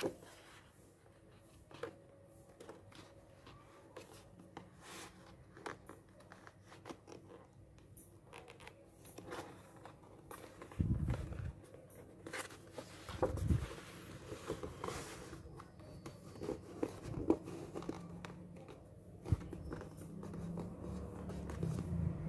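Calendar paper rustling and crinkling in irregular bursts as hands handle a large sheet and join its glued edges together, with louder crackles about halfway through.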